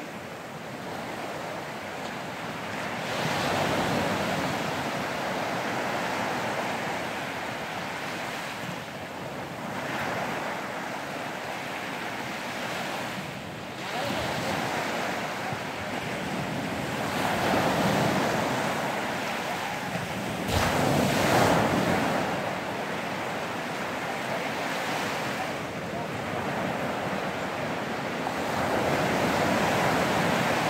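Small ocean waves breaking and washing up the shore, the noise swelling and fading every few seconds, with the strongest surge about two-thirds of the way in. Wind buffets the microphone.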